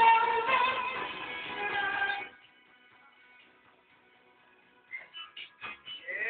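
Karaoke backing music with a woman singing into a microphone through an amplifier, cutting off suddenly about two seconds in. Then near quiet, with a few short sounds near the end.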